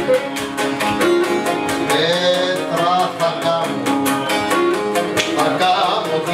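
Cretan syrtos played live on Cretan lyra, mandolin and laouto, the plucked mandolin and laouto keeping a steady strummed beat under the melody.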